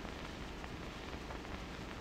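Faint steady hiss with low crackle from an old 16mm optical film soundtrack, in a gap between narration.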